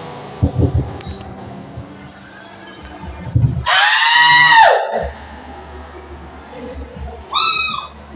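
A person's high-pitched scream, about a second long, rising then falling in pitch, about four seconds in, with a shorter high yell near the end.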